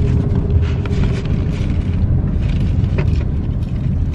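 Steady low rumble of a car heard from inside the cabin, with a faint hum, light crinkles of a paper food bag and a few small clicks.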